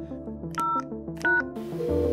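Two telephone keypad tones (DTMF beeps), each a short two-note beep, about three-quarters of a second apart, over soft background music; a steady tone starts just before the end.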